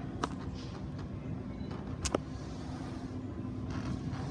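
Steady low mechanical hum with a faint constant tone, broken by two short sharp clicks, one just after the start and one about halfway through.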